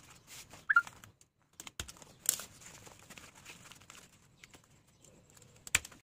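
Rustling and crinkling of a banner sheet being handled and fixed to a bamboo frame, with scattered clicks and knocks. A short high chirp just under a second in is the loudest moment, with sharp knocks about two seconds in and near the end.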